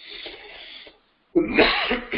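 A man sneezing: a breathy hiss for about a second, then a sudden loud voiced burst about a second and a half in.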